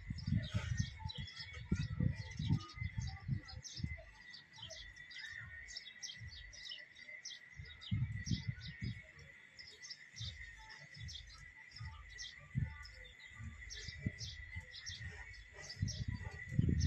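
Small birds chirping in quick, repeated short notes, over a steady thin high tone. Irregular low rumbles of wind and handling noise on the phone's microphone come in the first few seconds, again about halfway through, and near the end.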